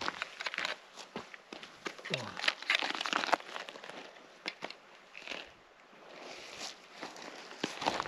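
Crinkling, rustling handling sounds and crunching steps on a gravel track, busiest over the first half and quieter after, with a short spoken 'oh'.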